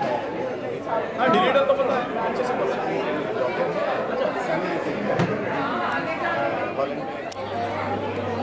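Chatter of many guests talking at once in a large hall, the overlapping voices indistinct. A steady low hum comes in near the end.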